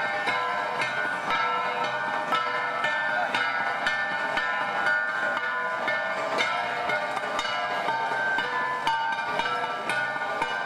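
Ensemble of handheld flat bronze gongs (gangsa) struck in a steady interlocking rhythm, each strike leaving a metallic ring that overlaps the next.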